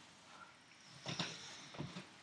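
Two faint, short sniffs through the nose, about a second in and again near the end, as a beer bottle cap is held up and smelled.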